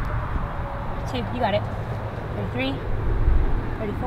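Faint, indistinct speech over a steady low rumble of outdoor background noise.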